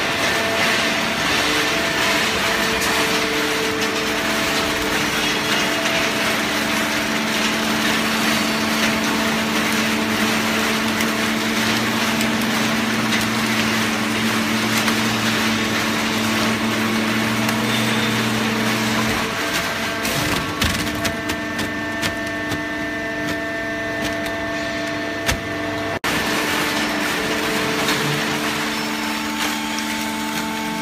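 Open-ended horizontal hydraulic baler for shredded paper running: a steady hum and whine from its motor and hydraulic pump over an even rushing noise. The hum tones shift to a different pitch about two-thirds of the way through.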